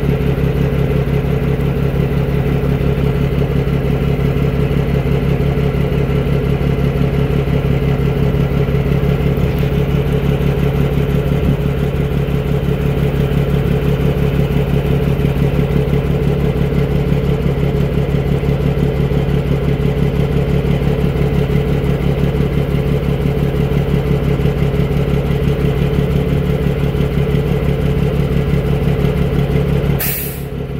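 Grain truck's straight-six diesel engine running loudly at a steady speed, heard from right beside its exhaust.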